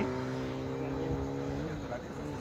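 A vehicle's engine running steadily close by, with its pitch dipping briefly near the end.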